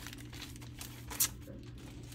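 Soft crinkling of a clear plastic packaging sleeve being handled, with one sharp click about a second in, over a faint steady low hum.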